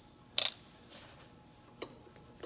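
Metal measuring tools set down on a cast-iron engine block: one sharp metallic clink about half a second in, and a fainter click near the end.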